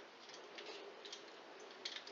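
Faint, irregular scraping strokes of a vegetable peeler shaving thin slices off a raw potato for chips.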